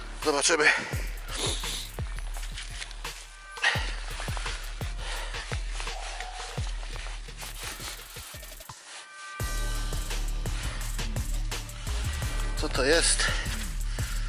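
A spade digging into frozen, straw-covered field soil, with a run of crunching strikes and scrapes over a steady rumble of wind on the microphone. A metal detector gives short electronic tones now and then and warbles near the end as the lead target is found.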